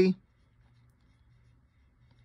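A man's voice trailing off on the end of a word, then near silence with only a faint low hum of room tone.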